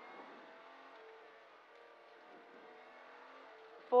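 Rally car engine heard from inside the cabin, a faint, fairly steady engine note while the car is driven along the stage. The co-driver's voice cuts in loudly right at the end.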